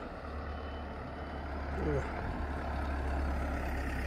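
Road traffic at night: a car's engine and tyres making a steady low rumble as it passes close by, a little louder from about two seconds in.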